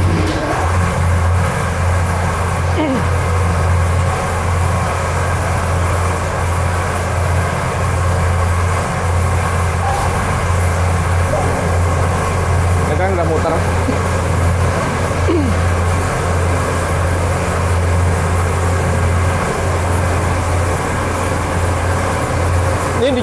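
Electric livestock feed mixer switched on: it starts abruptly and then runs steadily, a loud, even low motor hum with mechanical churning noise over it, as the feed is being mixed.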